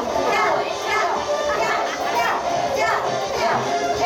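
Music for a group dance playing in a large hall, mixed with the chatter and shouts of a crowd, children's voices among them.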